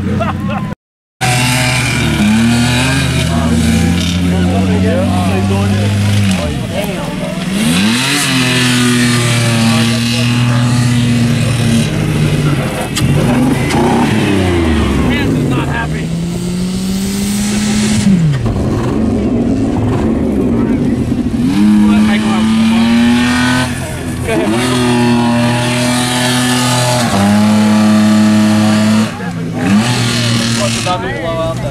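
Demolition-derby car and pickup engines revving hard again and again, the pitch climbing and falling with each run, with a brief dropout about a second in.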